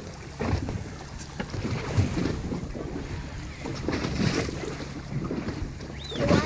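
Wind buffeting the microphone over water washing against a moving boat, with a faint steady low hum underneath.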